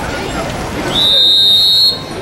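Referee's whistle blown once in a long, loud, steady blast of about a second, starting about a second in, signalling the kick-off of the second half.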